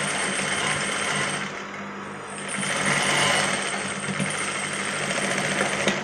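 Juki industrial lockstitch sewing machine running at speed, its needle hammering in a rapid even chatter as fabric is fed through. It eases briefly about two seconds in, picks up again and stops near the end.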